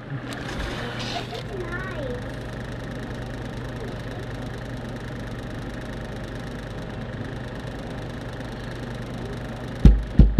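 Steady low hum over outdoor background noise, with faint children's voices in the first two seconds and a low thump near the end.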